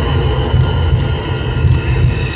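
Live band music played loud through a PA system, heavy in the bass, with the melody and higher parts coming through only faintly.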